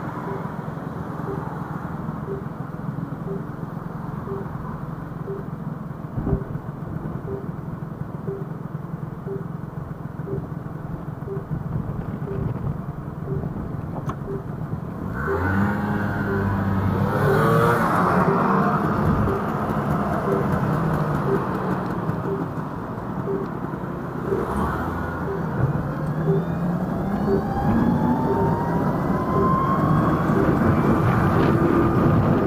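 Street traffic at a city junction: a steady hum of idling and passing vehicles with a soft, regular tick about one and a half times a second. About halfway through, vehicles pull away with engines accelerating and one passes loudly. Near the end a rising whine comes in as traffic gets moving.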